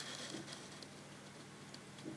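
Faint, steady low hum of an aquarium's pump, with scattered soft ticks and a short hiss near the start.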